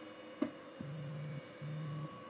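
Two Trees SK1 CoreXY 3D printer homing its X and Y axes: a short click, then the stepper motors hum at a steady pitch in two short moves, one after the other.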